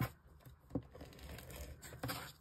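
Card stock and an adhesive tape runner being handled on a desk: a sharp click at the start, a second knock about three-quarters of a second in, and soft paper rustling and scraping between.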